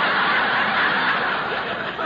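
Live studio audience laughing in a sustained wave at a comedy line, easing off near the end.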